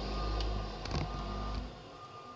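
Garbage truck's engine rumbling as it pulls away, dying down near the end, with a few light clicks and a faint high beep that comes and goes.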